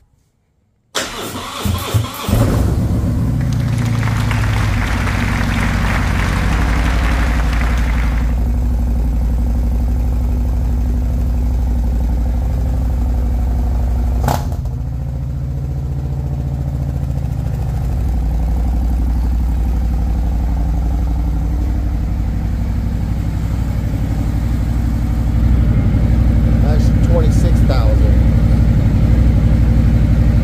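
Harley-Davidson Road Glide's Milwaukee-Eight V-twin being started for the first time after its fuel filter was replaced. It cranks and catches about a second in, then idles steadily, with one sharp click about halfway through.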